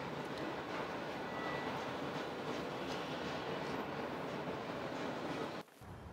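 Steady outdoor background noise from a high-rise balcony, an even rushing wash with a low rumble, like distant city traffic and wind. It cuts off suddenly near the end, and a quieter background takes over.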